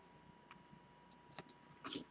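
Near silence, broken by three faint ticks from trading cards being handled and shuffled in the hands, over a faint steady thin hum.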